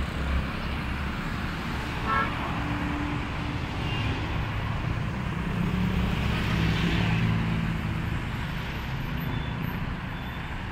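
Busy city street traffic: cars idling and moving in slow congestion, with a brief horn toot about two seconds in and a vehicle engine rumbling louder in the middle.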